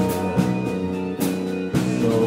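Live country band playing: strummed acoustic and electric guitars over a drum kit keeping a steady beat, with a drum hit about every three quarters of a second.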